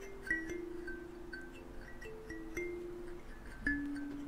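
A slow, soft melody of ringing, bell-like chime notes, a new note every half second or so, each left to ring on.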